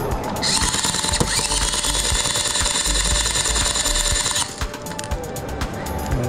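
Tokyo Marui BB autoloader's battery-driven motor whirring for about four seconds, starting and stopping abruptly, as it feeds BBs into an AK magazine.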